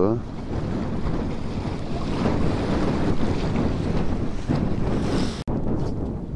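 Strong wind buffeting the microphone over sea waves washing in the shallows, with water splashing around a dip net being worked.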